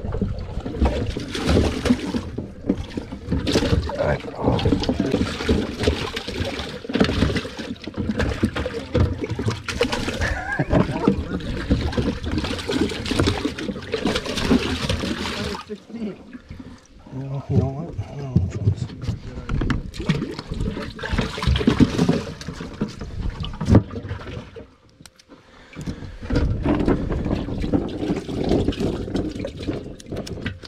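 Water spraying and splashing into a bass boat's livewell from its aerator, mixed with handling noise. The sound drops away briefly about 16 seconds in and again near 25 seconds before resuming.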